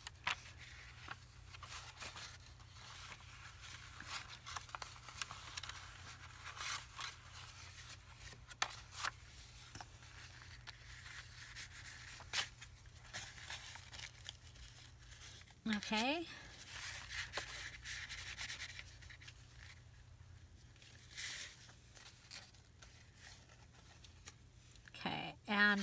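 Faint rustling, rubbing and small taps of hands handling a piece of fabric and paper journal pages on a craft table. A short murmur of voice comes about two-thirds of the way through.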